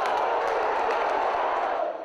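Football stadium crowd noise, a steady loud din of many voices that drops away abruptly just before the end.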